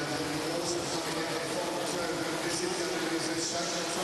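Spectator crowd at a swimming race, a steady wash of voices with no single sound standing out.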